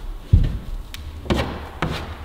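Climbing shoes and hands knocking and scuffing against the holds and wooden panels of an indoor bouldering wall: a low thump, then two sharper knocks about half a second apart.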